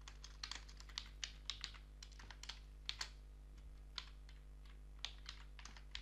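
Typing on a computer keyboard: faint keystrokes tapped in short, irregular runs while a line of code is entered.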